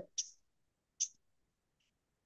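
Two short, sharp clicks about a second apart, as of a computer mouse being clicked, with dead silence around them.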